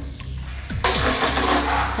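Water spraying from a handheld shower head fed by an old wall-mounted chrome mixer tap as the tap is worked. The spray comes up to a loud, steady hiss a little under a second in.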